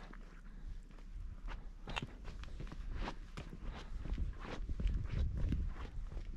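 Footsteps of a person walking on a paved path, about two steps a second.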